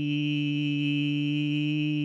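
A person's voice holding one long note at a steady pitch.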